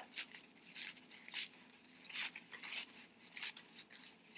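Thin paper napkin layers crinkling and rustling as they are peeled apart and pulled up by hand, in several short, irregular rustles.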